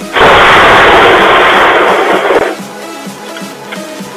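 Thunderclap from a very close lightning strike, picked up by a Ring doorbell camera's microphone: a sudden, overloaded, distorted crash that starts a moment in, lasts about two seconds and stops abruptly.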